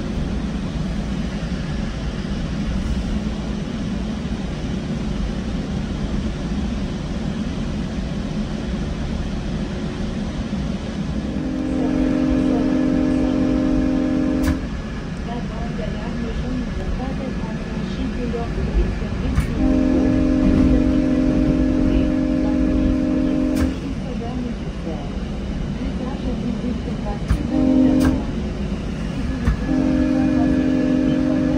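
GO Transit locomotive horn sounding the level-crossing pattern, long, long, short, long, as the train approaches a road crossing. It is heard over the steady rumble of the coach running on the rails.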